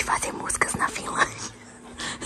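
Whispered speech: hushed, breathy talking for about the first second and a half, then quieter.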